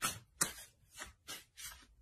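Tarot cards being shuffled by hand: a run of short, soft swishes, about three a second.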